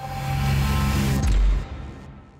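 Short musical logo sting: a swelling whoosh over sustained low notes, then a sharp hit with a deep bass boom about one and a half seconds in that fades away.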